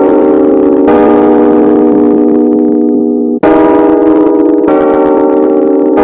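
Instrumental music: loud sustained synthesizer chords with no singing, the chord changing about a second in, again past the middle and once more shortly after.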